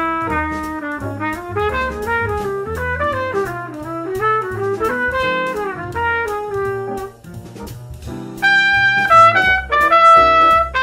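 Jazz trumpet improvising a solo in running lines over a bass backing, keeping strictly to one mode per chord with no passing tones. The trumpet breaks off about seven seconds in, then comes back louder and higher.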